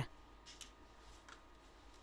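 Very quiet room tone with a few faint soft clicks, about half a second and a second and a quarter in, from a plastic medicine syringe and dosing cup being handled.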